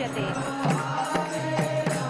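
Hindu devotional chanting (bhajan) by a group of worshippers. A held melodic line runs under regular percussion strikes about twice a second.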